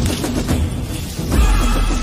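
Logo intro music with sound effects: a deep boom about one and a half seconds in, after which several high steady tones are held.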